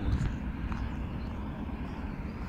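A steady low rumble, with a slightly louder swell just after the start.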